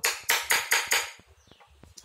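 Hammer tapping a hand punch into a German silver (nickel silver) sheet to emboss a pattern: five quick, sharp metallic taps in about the first second, then a pause.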